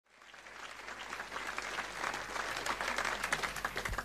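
Audience applauding, swelling up at the start and dying away near the end.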